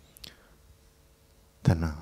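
Quiet room tone, then a man's voice through a handheld microphone starts near the end.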